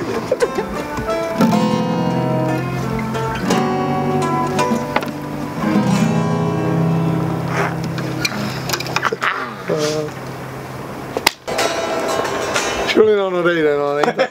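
Band music led by strummed acoustic guitars, with long held chords and notes. A falling glide comes near the end.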